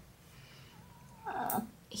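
A single short, dry, raspy meow from a Siamese cat about a second and a half in. The rescuer puts the extra hoarseness down to heavy panting after he overheated.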